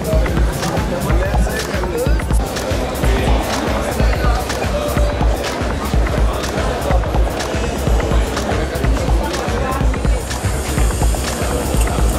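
Background music with a steady beat: deep kick-drum hits at an even pace, with short sharp hits above them.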